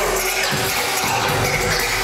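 Live hip-hop music playing loudly through a concert hall's PA, heard from within the audience and mixed with a wash of crowd noise, the sound dense and muddy.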